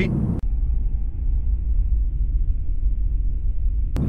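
Steady low road and drivetrain rumble inside the cabin of a 2017 Honda Civic cruising at highway speed. About half a second in, the sound turns abruptly duller and deeper.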